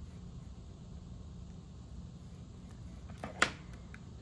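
Faint steady low hum of room tone, broken about three and a half seconds in by a single sharp tap as a bone folder is set down on the tabletop.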